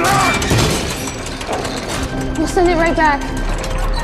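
Action-scene film sound: a sudden crash with breaking, shattering noise opens it, running on into a dense clatter with music underneath. A voice yells, its pitch wavering, about two and a half seconds in.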